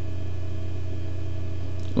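A steady low hum with no change, in a pause between spoken words.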